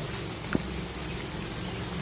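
Steady rain falling, an even hiss, with a single sharp click about half a second in.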